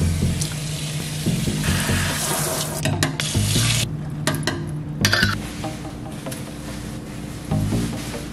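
Water from a kitchen faucet's pull-down sprayer running onto a stainless steel sink, rinsing out soap suds, and stopping about four seconds in.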